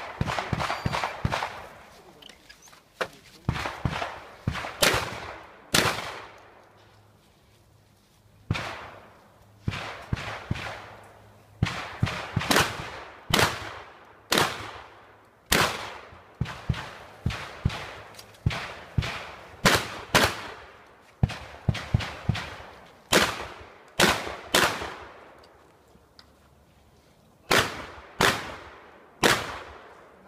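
Shotgun fired in a long run of shots while shooting a practical-shooting (IPSC) stage: sharp reports, often two to four in quick succession, each dying away briefly, with pauses of one to two seconds between groups.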